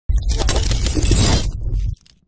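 Produced intro sound effect for a logo reveal: a dense burst of crackles over a deep rumble. It starts suddenly and cuts off abruptly near the end.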